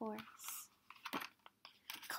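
A paper page of a picture book being turned: a short rustle, with a couple of soft taps about a second in.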